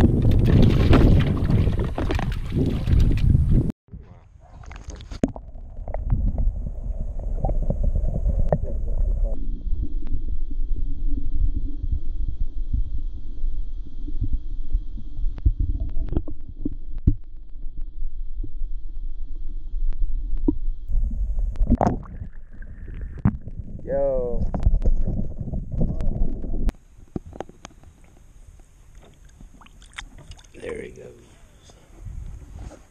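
Muffled underwater rumble and sloshing, with scattered clicks, from lake water moved by a hand and a landing net as a trout is released, heard through a submerged microphone. It opens with a few seconds of loud rushing water noise that cuts off abruptly, and it goes much quieter near the end.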